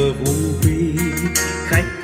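HLOV H16 trolley karaoke speaker playing a recorded Vietnamese ballad at demo volume: a sung melody over a band backing with a steady beat.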